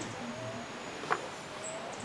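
Quiet outdoor background with faint, brief high chirps and one light click about a second in.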